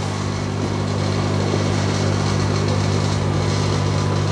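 Steady mechanical hum of aquarium air pumps running, under the even hiss of water bubbling from the airline tubes in the tanks.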